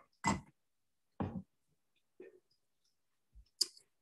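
A person drinking: four short, soft swallowing and mouth-click sounds about a second apart.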